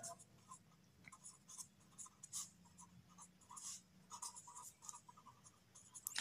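Felt-tip marker pen writing on paper: faint, short strokes in quick, irregular succession as a line of words is written.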